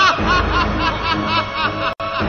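A man laughing loudly in a rapid string of "ha-ha-ha" bursts, about four a second, over dramatic background music. The sound drops out abruptly for a moment near the end.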